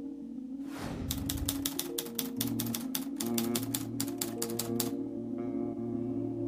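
A whoosh, then a fast run of typewriter key clicks, about five a second for some four seconds, over a low sustained music bed; a few ringing notes follow near the end.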